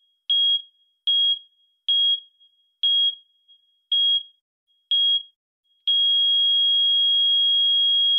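Heart-monitor sound effect: a single high beep about once a second, six times, then one unbroken flatline tone from about six seconds in, the sign that the heart has stopped.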